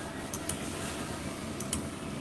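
Quiet room noise with a few light clicks, coming in two quick pairs about a second apart.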